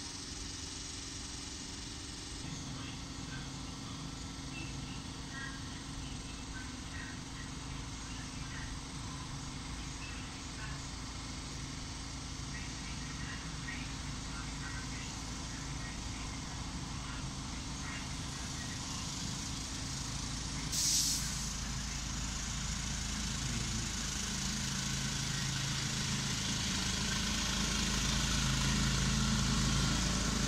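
Engine of a small miniature-railway locomotive running, getting louder over the last several seconds as the train approaches. A brief hiss about two-thirds of the way through.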